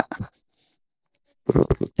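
A man's lecturing voice breaks off, followed by about a second of silence. Then a few short, low pops sound close on a headset microphone, likely breath or mouth noise, just before he starts speaking again.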